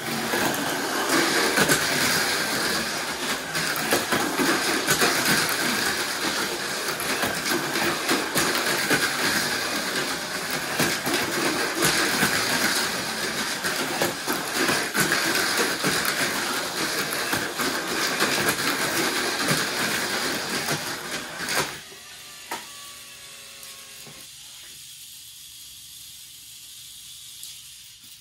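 Two Tamiya Mini 4WD Mach Frame cars racing on a plastic track: the high whir of their small electric motors and gears, with a constant rattle of rollers and tyres on the track walls. The noise stops abruptly about three quarters of the way through, leaving a few brief whines and then a quiet hum.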